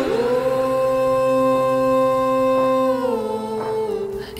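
A singer holds one long 'ooh' note in a song, with no drums under it. The note slides down to a lower pitch about three seconds in.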